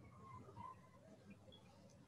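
Near silence: faint room tone over the call, with a few faint, indistinct short sounds in the first second.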